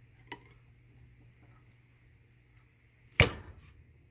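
Single-wire soap loaf cutter slicing a bar off a cold-process soap loaf: a faint click near the start, then one sharp, loud knock about three seconds in as the cut goes through.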